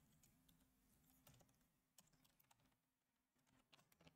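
Near silence, with very faint, scattered computer keyboard keystrokes from typing.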